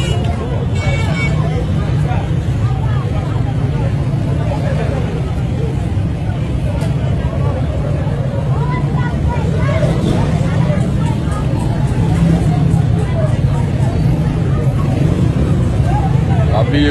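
A heavy container truck's engine running steadily with a low rumble, with indistinct voices of people talking in the background.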